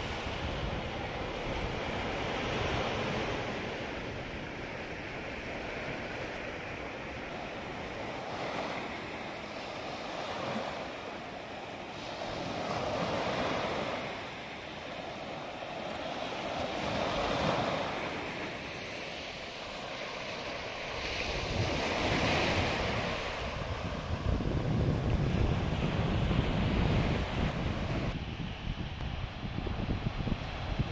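Sea surf breaking and washing up a sandy, rocky shore, swelling and falling back every few seconds. In the last third, wind buffets the microphone with a low rumble.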